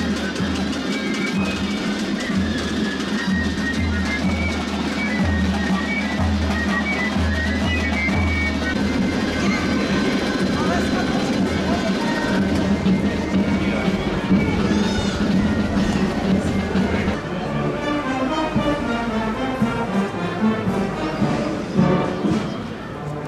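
Street procession band playing: drums with a deep regular beat and a high-pitched melody over it. The deep beat stops about nine seconds in, and crowd voices carry on.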